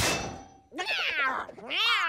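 Cartoon cat voices yowling and meowing: two wavering cries whose pitch slides up and down, the first about a second in and the second near the end. A burst of background music dies away at the very start.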